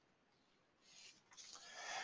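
Near silence between spoken sentences, with a faint breathy hiss growing in the second half, like an intake of breath.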